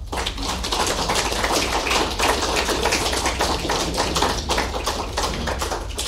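Audience applauding, steady clapping that tapers off near the end.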